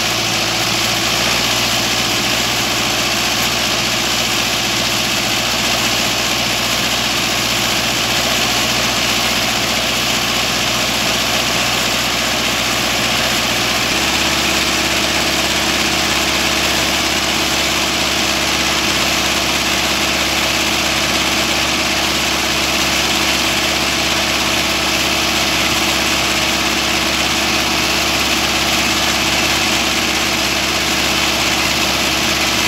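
Tractor diesel engine running at a steady idle while a round bale is wrapped in film. About halfway through, the engine note changes abruptly and then holds steady again.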